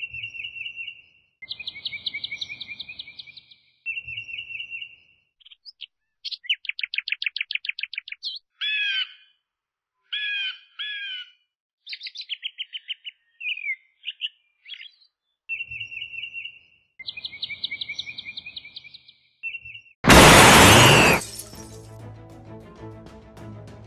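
Bird song of repeated chirps and fast trills, the same phrases coming back as if looped, ending near the end in a loud, noisy, crash-like burst with a falling tone.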